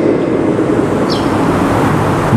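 Steady rushing background noise with no clear pitch, in a pause between spoken phrases.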